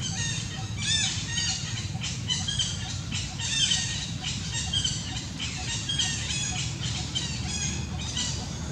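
Busy, high-pitched animal calls: short chirps and squeaks repeating several times a second over a steady low rumble.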